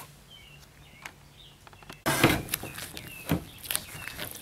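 A heat-softened decal being peeled off a painted motorcycle fairing by a gloved hand: crackly rustling and peeling sounds with a few sharp clicks, starting about halfway through after a quiet stretch with faint bird chirps.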